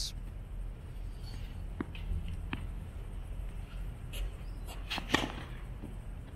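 Tennis serve practice: a racket hitting a tennis ball with a sharp pop. A few fainter knocks come first, and the loudest hit is about five seconds in, over a steady low outdoor rumble.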